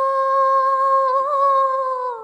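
A singer holding one long hummed note, wavering slightly after about a second and starting to drop in pitch at the very end.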